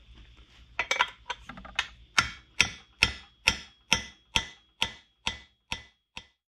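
A steady run of about a dozen sharp metallic clicks, evenly spaced at about two a second, each with a short ring, stopping just before the end.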